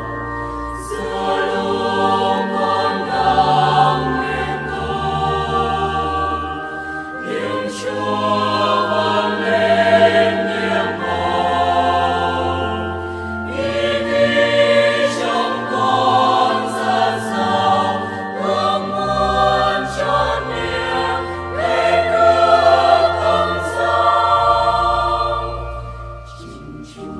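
Choir singing a Vietnamese Catholic communion hymn, verse lyrics in sustained sung phrases with musical accompaniment.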